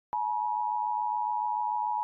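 Television bars-and-tone reference tone: a single steady, unwavering beep-like sine tone that comes in with a short click just after the start and holds at an even level.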